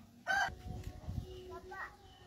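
A chicken calling: one loud, short, high-pitched squawk about a quarter second in, then fainter calls near the end, over low rumble from wind or handling on the phone microphone.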